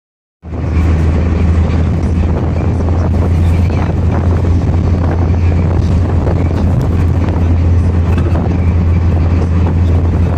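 A car driving, heard from inside the cabin: a steady low engine and road rumble with tyre and wind hiss.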